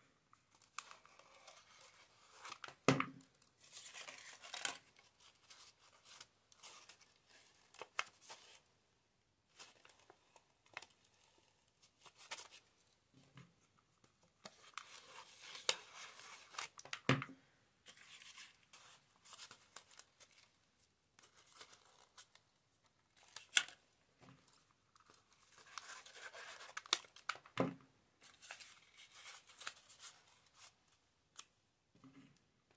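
Old book-page paper rustling and crinkling in irregular bursts as the petals are handled and glued together, with a few sharp clicks and taps in between.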